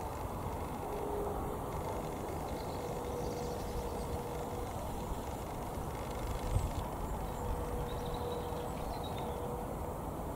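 Steady rumble of distant road traffic, with a faint hum that comes and goes.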